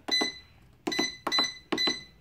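Electronic price-computing scale's keypad beeping as keys are pressed: four short, high beeps, one at the start and three close together in the second half.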